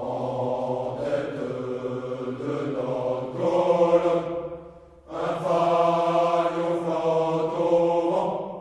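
Men's choir singing a French military song, two phrases of long held notes with a short break about five seconds in.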